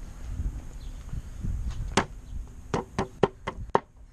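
Homemade cast-aluminum sword striking a banana on a wooden board: one blow about halfway through, then five quick blows about four a second. The blunt blade mashes the banana rather than cutting it.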